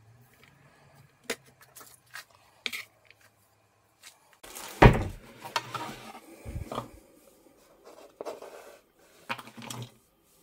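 Chef's knife tapping a few times on a bamboo cutting board as an onion is finely chopped, then a loud knock about halfway and rustling as a plastic bowl is brought in. Near the end, chopped onion is scraped off the board into the bowl, with a final short knock.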